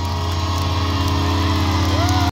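An amplified rock band's guitars ringing out a sustained low drone through the stage amps, with a steady hum and a couple of gliding pitch bends, like guitar feedback or a whammy-bar dive.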